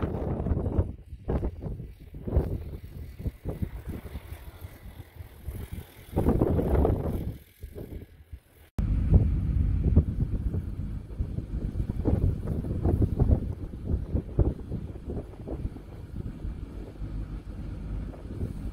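Strong gusting wind buffeting the microphone: an irregular low rumble that swells and drops with each gust, broken off sharply for an instant about nine seconds in.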